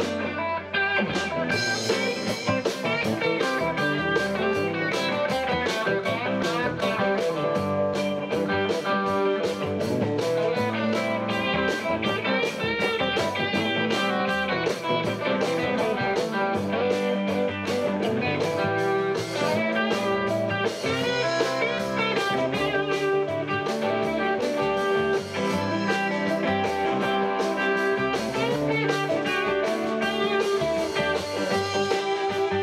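Live band playing: electric guitars over a drum kit keeping a steady beat, in a bluesy rock style.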